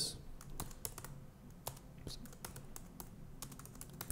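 Typing on a computer keyboard: a run of light key clicks at uneven intervals.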